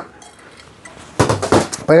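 Kitchen knife on a honing steel: a sharp metallic clink at the start, then, after a pause, a quick run of rasping metal strokes in the second half.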